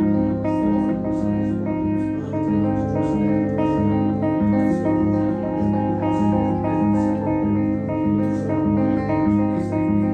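Live band playing the instrumental opening of a song: electric guitar over bass and drums, in a steady, even rhythm of repeated notes.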